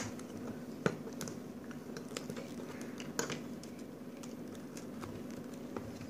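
Faint, scattered plastic clicks and taps as a Play-Doh tub and its snap-on lid are handled and worked at by hand, over a steady low hum.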